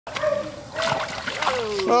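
Water splashing and sloshing in a shallow plastic wading pool as hands scoop water around a dog standing in it, in several short splashes.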